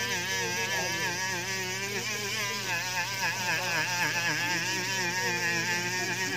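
Small handheld rotary tool spinning a buffing wheel against a carbon-fibre surface, its motor whine wavering up and down in pitch as the wheel is pressed and eased.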